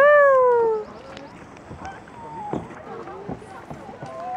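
A high, drawn-out vocal exclamation that falls steadily in pitch and lasts just under a second, followed by quieter scattered voice sounds and light knocks.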